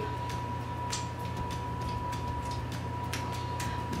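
Quiet, irregular smacking clicks of a mouth tasting sticky peanut butter licked off a finger, over a steady low hum and a thin steady whine.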